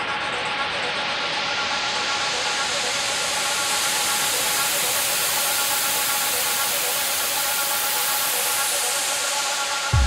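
Electronic dance track in a breakdown build-up: a white-noise riser sweeps upward and holds over a sustained chord, with the kick and bass cut out. Near the end the noise thins, and the kick and bass drop back in heavily at the very end.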